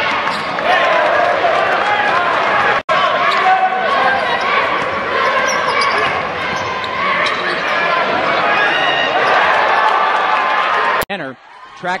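Basketball game sound in a large arena: a steady wash of crowd voices with the ball bouncing on the hardwood. It drops out for an instant about three seconds in and cuts off abruptly near the end.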